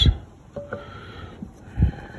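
A brief low thump near the end, over faint room noise, as control-box parts are handled.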